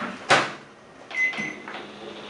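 Samsung microwave oven door shut with a sharp knock, then a short high keypad beep about a second later as the heating time is set.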